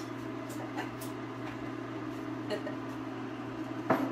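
A steady low hum from a kitchen appliance, with a few faint light taps and a sharper click near the end as a fork pokes vent holes into the tops of unbaked pastry pies in a silicone muffin pan.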